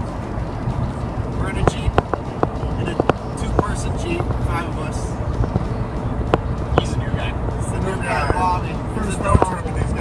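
Steady low road and engine rumble inside a moving passenger van's cabin, with scattered sharp clicks and knocks and brief bits of low talk from the passengers.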